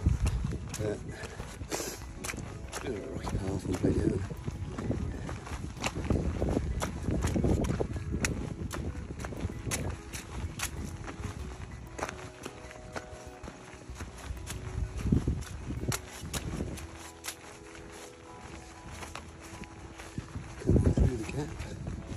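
Footsteps on a stony mountain path at a steady walking pace, with wind gusting on the microphone.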